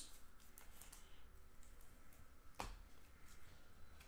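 Faint handling of glossy trading cards and pack wrapper: soft slides and light clicks as cards are flipped through by hand, with one sharper snap about two and a half seconds in.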